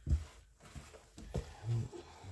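A gloved hand stirring and scraping damp worm bedding around a plastic storage tote: a few soft rustles and scrapes, with sharper knocks just after the start and about a second and a half in.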